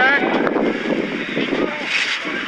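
A spoken word, then a steady murmur of distant voices and outdoor background noise.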